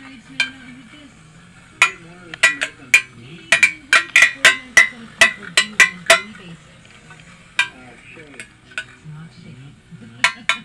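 Spinning Beyblade tops clattering in a metal tin, with a quick run of sharp metallic clinks for the first six seconds or so, then a few scattered clinks.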